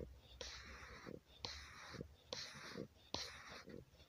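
A person whispering in short, regular phrases, about one a second.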